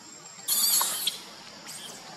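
Baby macaque screaming in fright: one loud, shrill cry about half a second in, lasting about half a second, then a fainter short squeak near the end.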